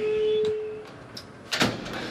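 A short steady tone lasting just under a second, then a single sharp door clunk about a second and a half in.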